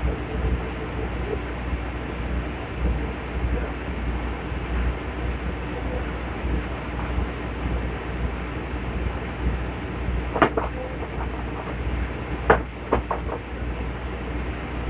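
Steady low background rumble, with a sharp click about ten seconds in and a louder click followed by a few quick smaller clicks near the end.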